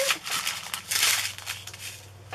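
Small plastic bags of diamond-painting drills crinkling and rustling as they are handled, a run of crackles and small clicks that is strongest in the first second and dies away near the end.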